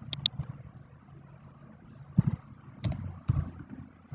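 Clicks and light knocks of a computer keyboard and mouse as spreadsheet cells are moved and text is typed: a quick cluster of clicks at the start, then three separate knocks in the second half.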